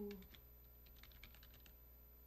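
A quick run of about ten faint light clicks in the middle, over near-silent room tone.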